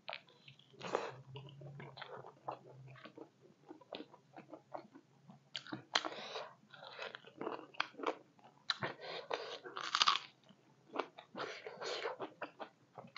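A person chewing a handful of silkworm pupae and rice, with irregular crunches through the mouthful.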